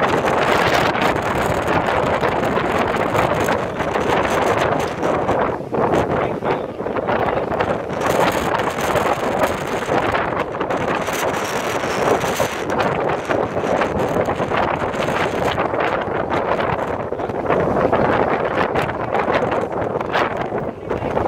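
Strong wind buffeting the microphone, mixed with rough surf surging and breaking against rocks, in a loud, uneven rush that rises and falls.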